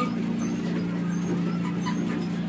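Steady low hum from a small ride train's motor, holding one pitch throughout, with a few faint short chirps above it.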